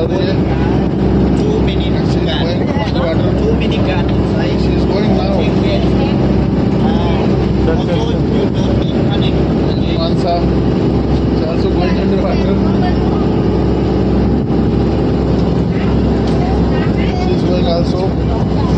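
A motor running steadily and loudly close by, a continuous low drone with no change in pace, with indistinct voices over it.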